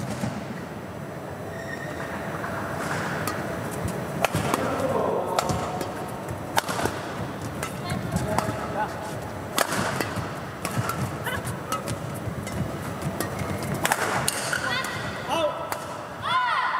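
Badminton rally: rackets striking the feathered shuttlecock in sharp cracks, irregularly every one to two seconds, over the murmur of an indoor hall.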